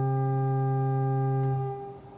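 Organ holding a sustained chord, then released and dying away near the end, a pause between phrases.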